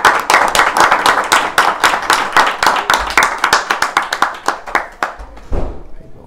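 Audience applauding: many hands clapping densely, thinning out and dying away about five seconds in.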